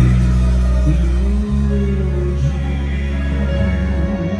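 Live band with keyboards playing sustained chords over a held bass note, the bass moving to a new note about one and a half seconds in; no singing.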